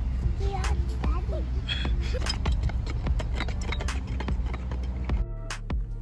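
Children's shouts and calls at a distance over a steady low rumble and music, with scattered light clicks; the sound changes abruptly about five seconds in.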